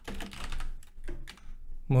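Typing on a computer keyboard: an uneven run of keystrokes as a few characters are typed.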